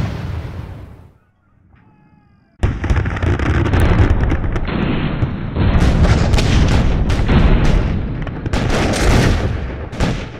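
Battle sound effect of Civil War gunfire: a heavy boom dies away over the first second, then after a short lull dense, continuous musket and cannon fire breaks out about two and a half seconds in and carries on.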